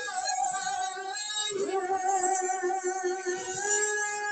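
Singing over music: long held vocal notes that glide up to a new pitch, once about a second and a half in and again near the end.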